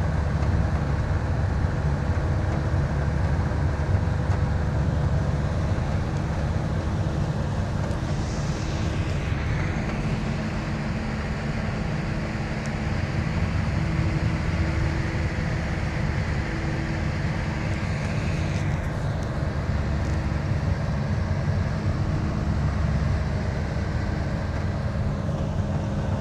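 Bus engine and tyre noise heard from inside the driver's cab at highway cruising speed: a steady low drone, with a rushing noise that swells twice, about eight and eighteen seconds in.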